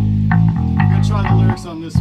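Live punk rock band playing a repeating riff on bass guitar and electric guitar with drums. The music drops out briefly about a second and a half in, then comes back.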